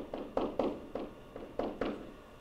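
A stylus tapping and stroking on a screen while handwriting, about seven short, sharp taps spread over two seconds.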